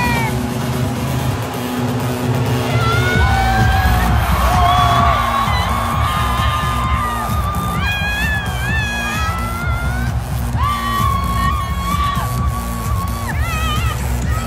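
Loud live dance music from a festival stage sound system, with heavy pulsing bass under a high melody line that slides between notes.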